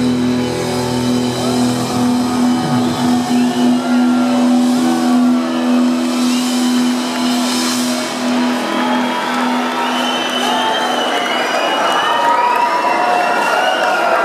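A live rock band's final held note rings out through the PA as one steady tone and dies away about eleven seconds in. Crowd cheering, shouts and whistles build up over it and carry on after it stops.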